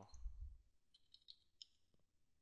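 Faint clicks of computer keyboard keys, a handful of keystrokes about a second in, as a web address is typed into a form field. A soft low thump at the start.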